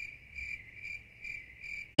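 Cricket chirping sound effect: a steady high trill pulsing about twice a second, which starts abruptly and is cut off sharply at the end, edited in as the 'crickets' gag for an awkward silence.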